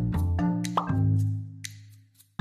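Light, playful background music of short struck notes over a bass line, with a quick rising 'plop' sound about three quarters of a second in, fading away toward the end.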